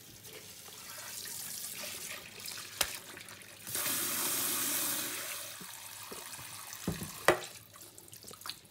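Kitchen tap running into a stainless steel bowl of butterbur buds in a steel sink, water splashing over the buds as they are rinsed, with the flow at its heaviest about halfway through. Two sharp knocks, about three and seven seconds in.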